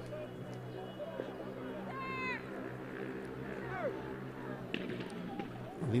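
Distant voices calling out across a football pitch: one short call with falling pitch about two seconds in, and another near four seconds. A steady low hum runs underneath.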